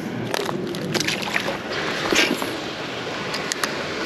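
Water sloshing with a few small splashes at a rocky lake shore as a just-caught crappie is let back into the water, with handling noise in between.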